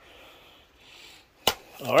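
A single sharp click about one and a half seconds in, as a hand handles the rifle magazine in its plastic packaging on a blanket, after a few seconds of faint rustling.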